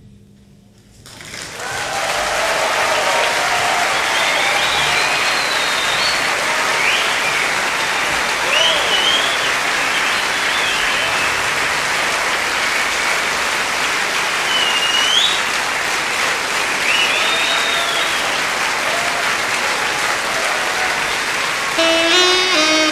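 Concert audience applauding and cheering, the clapping swelling up about a second in and holding steady, with whistles and shouts rising over it.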